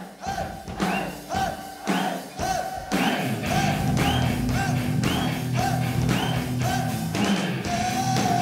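Live heavy metal band playing: chords and drums hit together about twice a second, and the full band with a sustained bass comes in about three seconds in.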